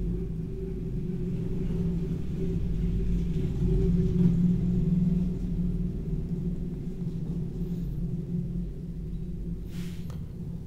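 A steady low hum with a droning tone, swelling slightly in the middle and easing off again.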